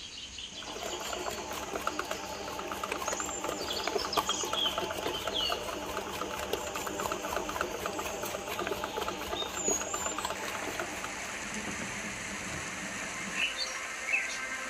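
Panasonic bread maker kneading dough: its motor and kneading paddle run with a steady, busy mechanical rattle that starts about half a second in and eases somewhat after about ten seconds. A few short high chirps sound over it.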